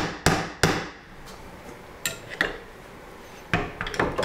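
Claw hammer driving a nail into a cedar ledger board: three sharp blows in the first second. Lighter clicks about two seconds in and a few knocks near the end as a pair of loppers is hung on the nail.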